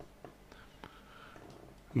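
A quiet pause in a man's speech, holding only a few faint clicks and a soft breath. His voice comes back right at the end.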